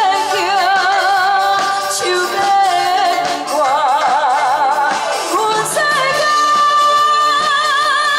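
A woman singing live into a handheld microphone over a live band's accompaniment through the stage sound system, her voice wavering with wide vibrato in the middle and settling into a long held note near the end.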